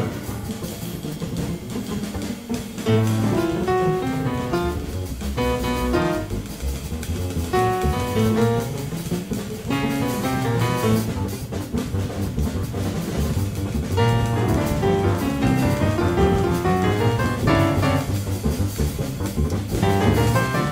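Jazz piano trio playing live: grand piano, double bass and drum kit with cymbals, all three together without a break.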